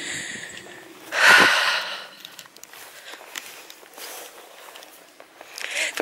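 A loud, noisy breath close to the microphone, a sniff or snort lasting under a second, about a second in. Faint scattered crackles of footsteps on dry grass follow.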